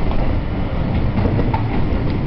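Steady low rumble of a train running, heard from inside the carriage.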